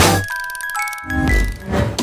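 Short intro jingle of bell-like chime notes ringing out one after another at several pitches and held, with a soft low hit about a second in.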